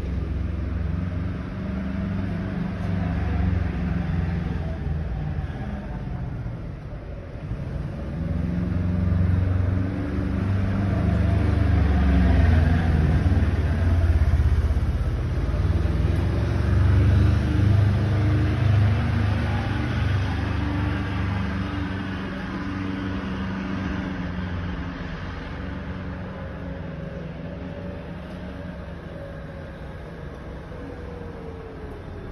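Car engines running in the street, with low engine notes rising and falling as vehicles move. Loudest in the middle, then fading toward the end.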